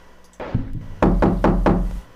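Knocking on a door: one knock, then a quick run of about five knocks.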